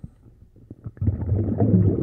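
Muffled low rumbling and gurgling picked up by a camera held underwater. A few faint clicks come first, and the rumble turns loud about a second in.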